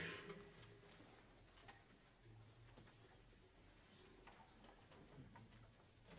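Near silence: room tone with a sharp click at the start and a few faint ticks and taps scattered through.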